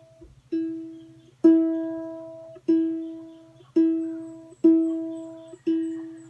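A ukulele's E string plucked six times, about once a second, each note ringing out and fading, as the string is brought up to pitch by ear against a tuner.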